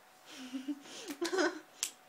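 Short voice sounds from a person, loudest a little past the middle, then one sharp click near the end.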